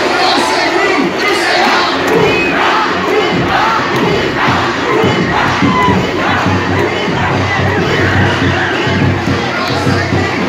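A large crowd of boys and young men shouting and cheering loudly and without a break, many voices overlapping.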